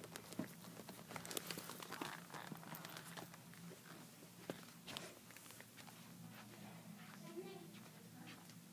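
Faint rustling and light clicks of toy dolls and a handheld camera being handled, over a low steady hum.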